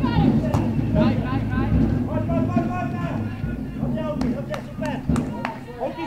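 Distant voices of players and coaches calling out across a football pitch, over a steady low rumble that drops away about five seconds in. Several sharp knocks sound in the second half.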